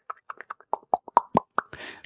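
A person making a quick run of mouth pops, about six a second, with the pitch of each pop shifting up and down. A short breathy hiss follows near the end.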